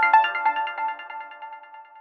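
Tail of a news intro jingle: bright electronic chime notes repeating in quick echoes and fading away.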